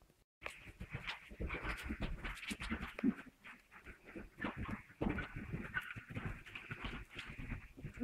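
A horse cantering on soft arena footing, its hoofbeats coming in a quick, irregular run of thuds. The sound starts abruptly about half a second in, after a short dropout.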